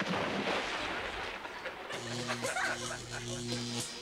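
Electric floor buffer switching on with a sudden loud rush of noise, then its motor humming steadily, cutting out briefly twice.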